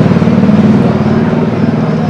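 A motor vehicle engine running close by: a loud, steady, low pulsing hum that starts abruptly, is strongest in the first second and eases slightly after.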